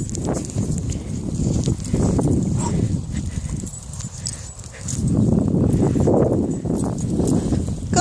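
Several dogs on leads moving about in the grass, with rustling and knocking from the phone being handled close to the microphone, in uneven bursts.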